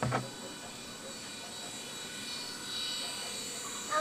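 Small toy helicopter's electric motor and rotor whirring steadily with a high buzzing whine, growing a little louder about halfway through, after a short knock at the start.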